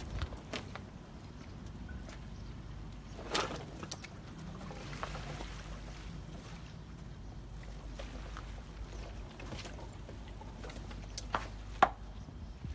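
Steady low rumble with a few sharp knocks of workers handling a wooden boat's launching cradle and cable on a slipway, the loudest knock about three seconds in and two more near the end.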